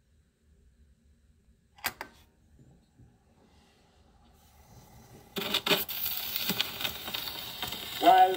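Phonograph starting a Victor 78 rpm shellac disc: a sharp mechanical click about two seconds in as the turntable is set going, then two loud clicks about five and a half seconds in as the needle meets the record, followed by scratchy surface noise and crackle from the lead-in groove, growing louder.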